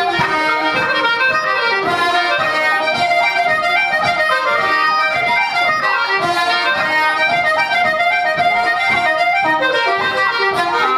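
Irish traditional dance tune played live on accordion, flute and fiddle together, at a brisk, steady pulse.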